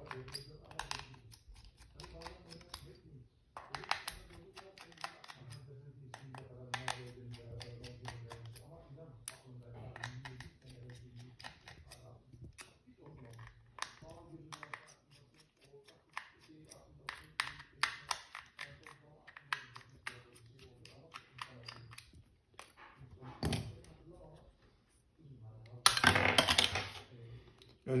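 Small sharp clicks and scrapes of a Phillips screwdriver and a pry tool on the screws and plastic mainboard cover of a Samsung Galaxy A02s as it is taken apart, with a louder burst of scraping and clattering near the end.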